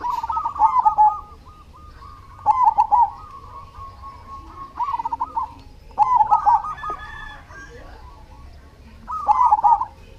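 Zebra dove (perkutut) singing: five bursts of quick cooing notes, each up to about a second long, coming every two to three seconds, with fainter cooing between them.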